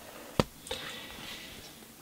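A CD case set down on a plastic sheet: one sharp tap about half a second in, then a faint rustle lasting about a second as the hand lets go of it.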